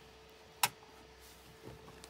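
One sharp click from the handbrake lever of a Polaris Ranger EV as it is moved, over a faint steady hum.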